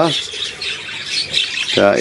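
Budgerigars chattering and warbling in a steady, continuous high-pitched twitter.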